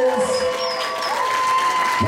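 Audience applauding, with held tones and voices underneath.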